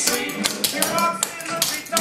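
Clogging shoe taps striking a wooden dance floor in a quick, even run of clicks, about five or six a second, as the dancer does two clogging basics (double step, rock step). A pop song with singing plays under the taps.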